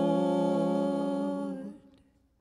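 Worship singers' voices holding the last note of a slow praise song, a single sustained note that fades out just before two seconds in.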